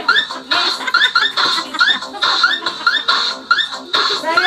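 A group of children clapping and calling out short high-pitched sounds in a steady rhythm, about two beats a second.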